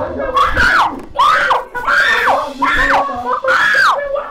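Loud, high-pitched distressed wailing cries, repeated about six times, each one rising and then sliding steeply down in pitch.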